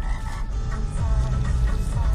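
Music playing on the car radio inside the cabin, over the steady low rumble of the car moving in traffic.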